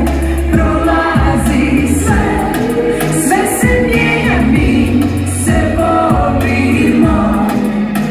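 A female lead singer sings over a live band, with electric guitar and bass guitar playing a steady low line beneath the voice.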